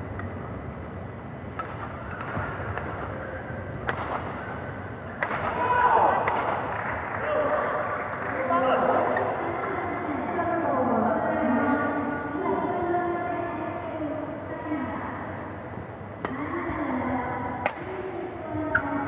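Indistinct voices talking among the players and spectators during a pause between badminton rallies, with a few sharp clicks.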